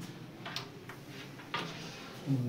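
Wooden carrom pieces clicking on the board as they are handled and set down: a few short sharp clicks, the loudest about a second and a half in.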